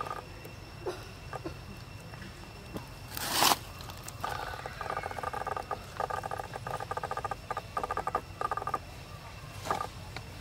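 A brief loud rush of noise about three seconds in. Then an animal calls in a run of short, buzzy, pulsed bursts lasting several seconds.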